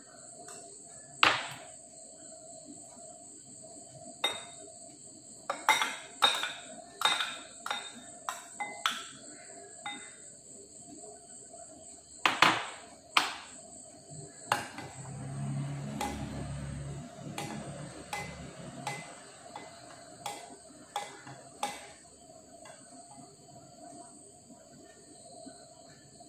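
A spoon clinking irregularly against ceramic and glass bowls while ingredients are spooned into a glass bowl of milk and stirred, with a stretch of softer scraping from stirring a little past the middle.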